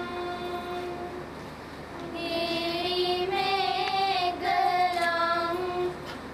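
A group of girls singing a chant together in unison, in long held notes. The voices thin out about a second in and swell again at about two seconds.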